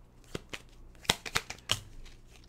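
Tarot cards from a Rider-Waite deck being handled as one card is pulled from the deck and laid down on the table. There is a string of short, sharp card snaps and flicks, the loudest about a second in and near the end.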